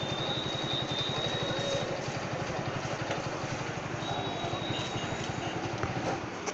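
A small engine idling with a rapid, even pulse, joined by a thin high whine that drops out for about two seconds in the middle.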